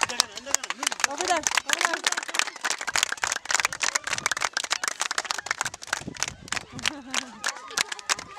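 A group of children clapping their hands, fast and unevenly, with many children's voices calling out over the claps.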